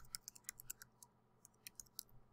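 Faint keystrokes on a computer keyboard as a short phrase is typed: a quick run of clicks in the first second, then a few more near the end.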